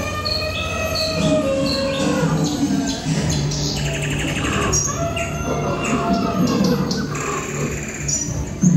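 Bird chirps and other animal calls over music, a recorded jungle soundtrack played at a jungle-themed display. High short chirps repeat about every 0.7 s in the first two seconds, joined by gliding calls and a steady low hum.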